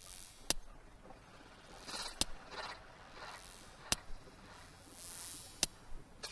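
Sparse, quiet intro of a dubstep track: a sharp click about every 1.7 seconds, four in all, with soft hissing noise swells rising and fading between them.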